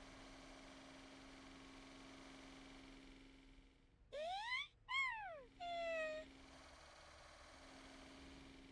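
A cartoon baby vehicle whimpering: three short, high wailing cries, the first rising, the second rising and falling, the third falling, about four to six seconds in. A faint steady hum lies underneath.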